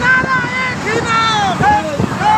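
Voices shouting a short repeated chant, with several motorcycles running underneath.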